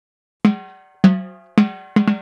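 Four drum hits, the first about half a second in, each ringing and fading away, coming a little closer together: the percussion lead-in of a cumbia.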